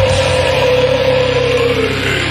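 Heavy metal song winding down: the drums stop shortly after the start, and a distorted electric guitar holds a sustained note that slides down in pitch near the end.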